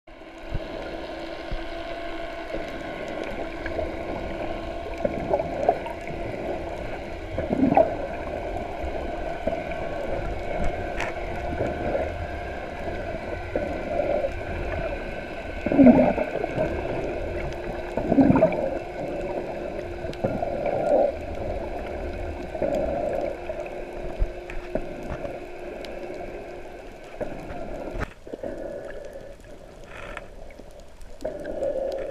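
Underwater sound through a camera's waterproof housing: a steady low hum with muffled gurgling bursts of a snorkeler breathing out bubbles through his snorkel, the loudest about halfway through.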